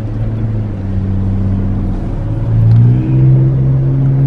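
Vehicle engine heard from inside the cab while driving: a steady low hum that rises in pitch about two and a half seconds in as the vehicle accelerates.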